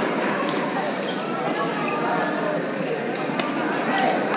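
Busy badminton hall ambience: many voices talking at once, with sharp clicks of shuttlecocks being struck on nearby courts, the clearest about three and a half seconds in.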